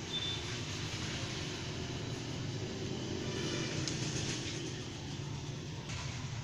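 Steady low rumbling background noise, with faint rustling and light clicks from cloth-strip yarn being worked on knitting needles.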